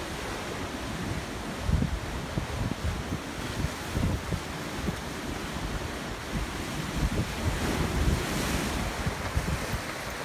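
Wind buffeting the microphone in uneven low gusts, over a steady wash of ocean surf.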